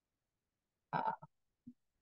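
Near silence broken about a second in by a single short spoken hesitation, "uh", followed by a brief low vocal sound.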